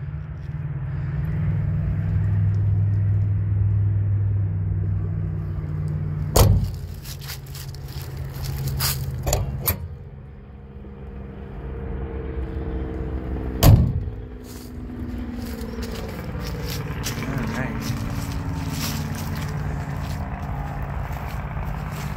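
A vehicle engine running steadily, with two loud thumps, one about six seconds in and one about fourteen seconds in, and some scattered clicks.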